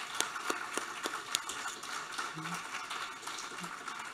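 Audience applauding, with sharp individual claps close to the microphone in the first second and a half, then thinning into softer, more distant clapping. A brief laugh comes about two and a half seconds in.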